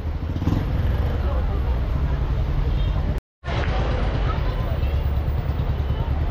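Outdoor ambience dominated by a heavy low rumble, with voices of passersby. The sound drops out completely for a moment just after three seconds in.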